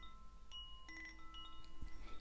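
Faint chimes ringing, several long notes at different pitches overlapping, with new notes sounding about half a second in and again near one second.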